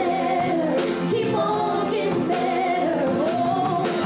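Gospel vocal group of men and women singing together in harmony, holding long notes that glide from one pitch to the next.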